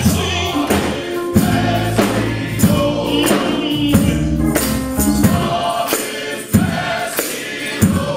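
A men's gospel choir singing with keyboard accompaniment over a steady percussion beat.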